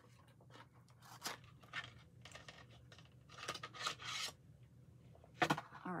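A small box being opened and its contents handled: a series of short scraping and rustling sounds, busiest between about three and a half and four seconds in.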